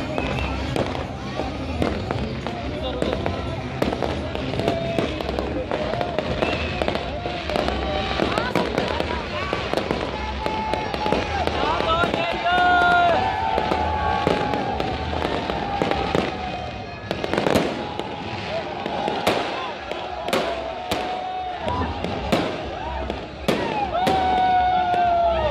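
Aerial fireworks bursting with sharp bangs, coming thicker in the last several seconds, over the chatter of a crowd.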